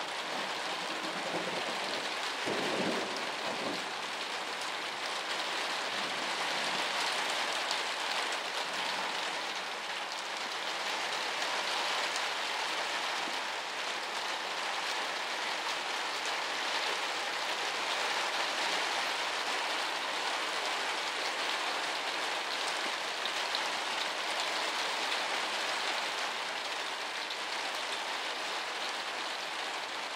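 Heavy rain falling steadily, an even dense hiss of drops on the roof and paved yard.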